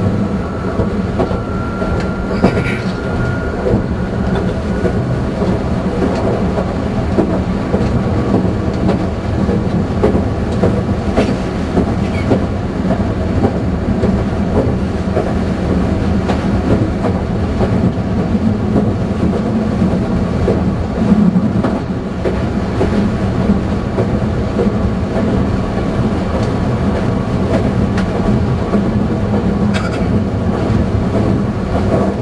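Meitetsu Panorama Car electric train running at speed, heard from inside the front cabin: a steady rumble of wheels on rail with clickety-clack over the rail joints. A faint thin whine rises briefly a second or so in and fades after a few seconds.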